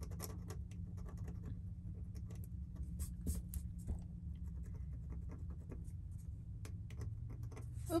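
X-Acto knife blade scratching at correction tape on a paper planner page: a string of small, quick scrapes as the whiteout is picked off, over a steady low hum.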